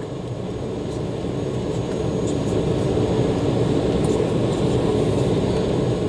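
Steady low rumble of an Embraer 190's GE CF34 turbofan engines and airflow, heard inside the airliner's cabin as it taxis after landing. It grows gradually louder over the first few seconds, then holds steady.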